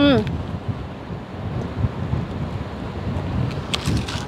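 Wind buffeting the microphone, an uneven low rumble. A few light clicks come near the end.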